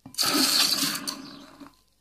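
Molten lead poured from a ladle into water, sizzling loudly as it hits the water and sets. The sizzle is strongest for about the first second, then dies away over another half second or so.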